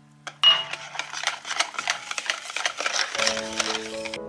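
Wire whisk beating flour into a thin batter in a ceramic bowl: quick, irregular clattering strokes of the wires against the bowl. The whisking starts about half a second in and stops abruptly at the end, over soft background music with mallet-instrument notes.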